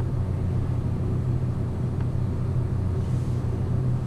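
A steady low hum, with nothing else much above it apart from a faint click about two seconds in.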